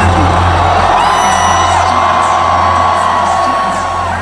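Loud electronic dance music over an arena sound system, with a deep steady bass and a high held tone, heard from the floor, while the crowd whoops and cheers.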